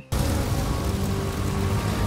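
Sudden loud dramatic soundtrack cue from the cartoon: a rumbling, hissing swell of noise with a sustained low chord underneath.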